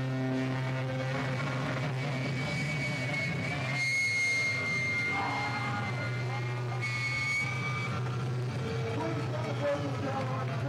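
Amplified stage noise between songs at a live band show: a steady amplifier hum under a chord that dies away at the start. A high, steady whine is held for about three seconds from near three seconds in and returns briefly around seven seconds, typical of guitar feedback, with indistinct voices.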